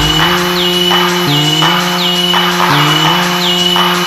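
Early-1990s gabber hardcore techno in a breakdown: the kick drum drops out, leaving a held synth tone that steps up in pitch every second or so, under a short high falling blip repeating about twice a second.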